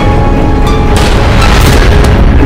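Dramatic background score: deep booming hits over a dense low rumble, with a few sharp strikes in quick succession.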